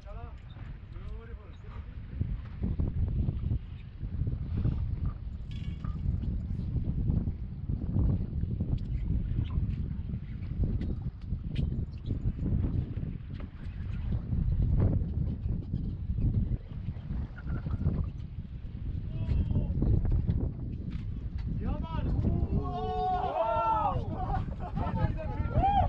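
Gusty wind buffeting the microphone over open sea, a heavy, uneven rumble. Near the end a wavering, pitched sound rises and falls.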